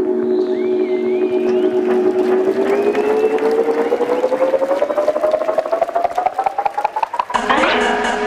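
Live electronic house music in a breakdown with the low beat dropped out: a held tone rises steadily in pitch over several seconds, with thin wavering sounds above it early on. The full texture cuts back in abruptly near the end.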